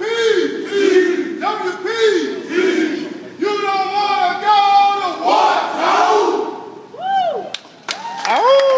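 A group of voices shouting together in a chant: short rising-and-falling shouts, with one longer held call in the middle.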